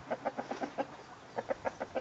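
Chickens clucking in quick runs of short clucks: one run in the first second and another near the end.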